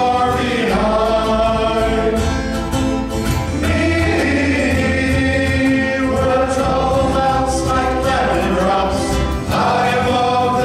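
Men's choir singing a hymn in harmony into microphones, holding long chords.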